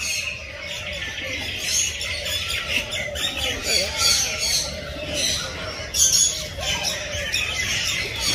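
Many birds chirping and squawking at once, dense overlapping high calls with a few sharper, louder squawks standing out.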